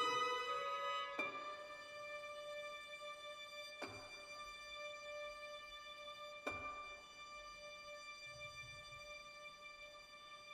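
Quiet symphony orchestra passage: violins hold a soft sustained note, with three faint, sharp notes sounding over it about two and a half seconds apart. The music grows softer throughout.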